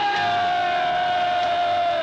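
A cartoon character's long held cry on one pitch, sagging slightly and ending after about two seconds.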